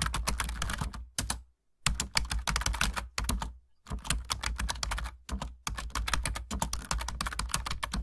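Ballpoint pen writing on paper: quick scratching strokes in runs, with short pauses between groups of characters about one, three and five seconds in.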